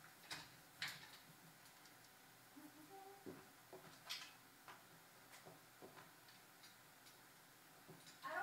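Near silence with faint scattered clicks and taps and a couple of brief squeaks from a marker writing on a whiteboard.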